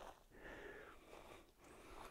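Near silence, with two faint, soft rustles.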